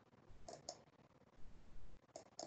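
Two quick computer mouse clicks close together, about half a second in, followed by a couple of soft low thumps later on.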